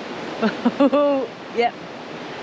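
Steady rush of a shallow river running over rocks, under a woman's laughter and a short "yep".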